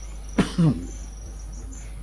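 A man's single short cough about half a second in, over a steady low hum.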